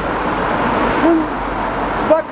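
A woman's voice gives one short, hoot-like held note about a second in, over steady street noise.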